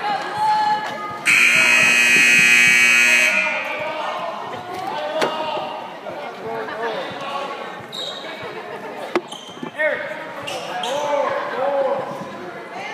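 Gymnasium scoreboard buzzer sounding loudly for about two seconds, starting a little over a second in, over players' and spectators' voices and shouts and basketball bounces.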